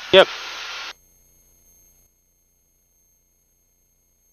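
Near silence: a steady intercom hiss cuts off abruptly about a second in, leaving a dead-quiet headset feed with no engine or cabin noise.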